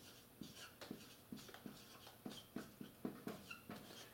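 Dry-erase marker on a whiteboard as words are written: a faint, irregular string of short strokes and taps with a few brief squeaks.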